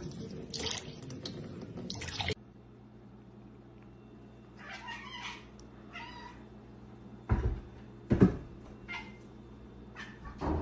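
A thin stream of tap water trickles and splashes into a sink for about two seconds and stops abruptly. A few seconds later a cat meows a few times, and near the end come two loud thumps a second apart.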